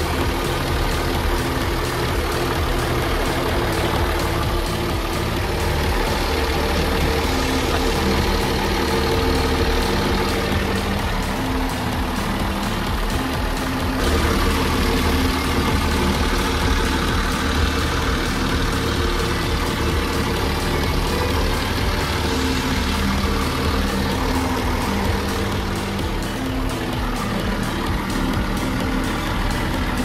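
Volvo Penta KAD43 marine diesel engine idling steadily, heard close up.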